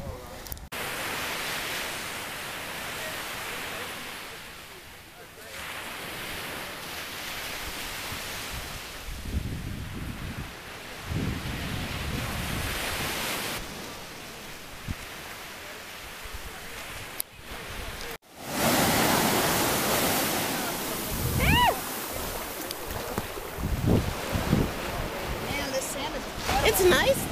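Surf breaking and washing up a sandy beach, swelling and fading, with some wind on the microphone. About two-thirds of the way in it turns suddenly louder and closer, and a brief voice call rises out of it.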